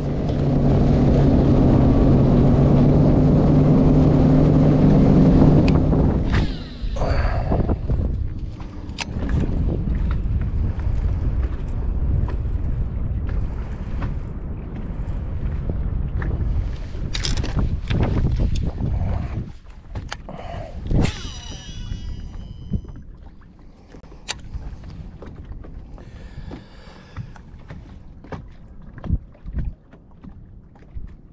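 Bass boat outboard engine running under way with a steady drone for about six seconds, then throttled back. After that come quieter water and hull noise and scattered clicks of fishing gear.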